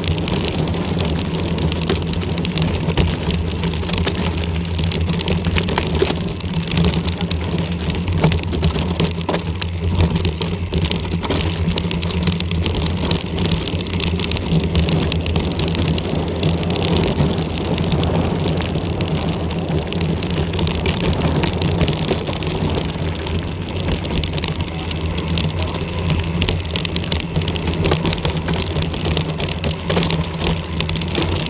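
Wind rushing over an action camera's microphone and mountain-bike tyres rolling fast over loose gravel and rock on a downhill dirt track, with a steady low rumble and frequent small rattles and knocks from the bike on the rough surface.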